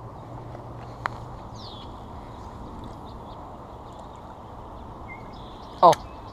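Steady outdoor background noise, with a single sharp click about a second in and a short, high, falling bird chirp just after it. A man's voice cuts in near the end.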